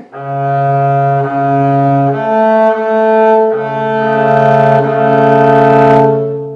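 Double bass bowed in a two-note double stop of G and B, held over several bow strokes while the interval is checked for intonation; the lower note drops out for about a second and a half in the middle, then returns.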